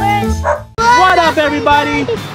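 Intro jingle music with a cartoon dog's bark sound effect and a voice. The music breaks off sharply about three-quarters of a second in, then starts again.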